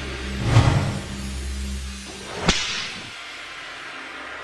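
Logo-reveal sound effects: a whoosh over a low rumble about half a second in, then a sharp whip-like swish about two and a half seconds in, settling into a low hum.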